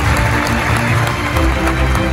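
Audience applauding in a large hall, under background music with deep bass notes.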